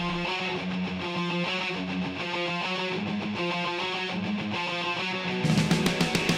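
Live rock band: an electric guitar plays a choppy riff of short, repeated chords with little else behind it. About five and a half seconds in, the drums and full band come back in, louder, with cymbal crashes.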